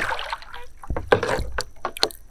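Shallow marsh water splashing and sloshing, in short irregular spurts, with a louder stretch around the middle.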